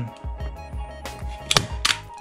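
Hand-operated chrome staple gun firing a staple through a dirt bike seat cover into the seat base: two sharp clicks close together about one and a half seconds in. Background music with a steady beat plays underneath.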